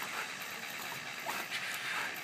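Steady hiss of a Super Soaker water gun's stream spraying at a dog, with a couple of faint short sounds in the second half.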